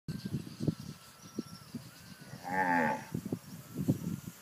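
A Brahman heifer moos once, a short call a little over half a second long about two and a half seconds in. Scattered low thumps come before and after it.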